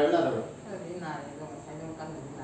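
A person's voice: one short, loud vocal sound at the start, followed by two fainter ones about a second in.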